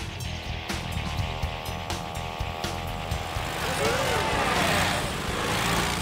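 Cartoon sound effect of a feeble little motor scooter engine puttering and straining, with background music underneath. A steady, even-pitched buzz sits over the rumble during the first few seconds.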